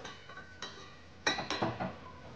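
Cooking utensils clicking against a stainless steel pot while shrimp are stirred and turned in it. There are a few light clicks in the second half.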